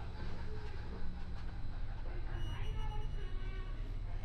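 Steady low hum of a corridor's background noise. From a little past halfway, a faint ringing tone made of several pitches sounds for about a second and a half.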